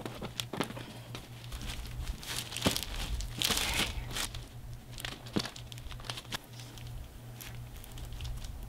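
Plastic drop cloth and cotton sweatpants rustling and crinkling in irregular bursts as the fabric is scrunched together by hand, densest about three and a half seconds in. A steady low hum runs underneath.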